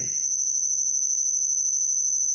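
A steady, high-pitched insect trill with a fast pulse, running unbroken, over a faint low steady hum.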